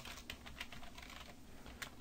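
Faint computer keyboard typing: a quick, uneven run of small key clicks.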